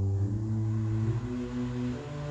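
Pipe organ playing softly: a low pedal note held beneath a slow line of single notes stepping in the middle range.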